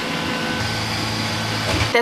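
Neato D750 robot vacuum running its suction motor at the start of a cleaning run: a steady, fairly loud whoosh like a hair dryer, with a faint high whine. A low hum joins in about half a second in.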